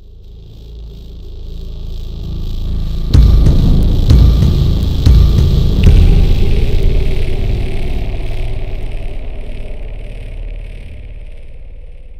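Cinematic logo sting: a rumbling swell builds for about three seconds, then four heavy bass hits land about a second apart, and the sound slowly fades away.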